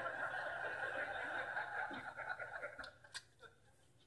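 Pencil scribbling and shading on paper, a steady scratchy hiss with fast fine strokes that stops about three seconds in.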